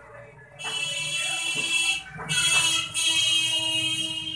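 A loud, high-pitched buzzing tone like an alarm or buzzer, sounding in three stretches: it starts about half a second in, breaks briefly about two seconds in and again just before three seconds, and stops near the end.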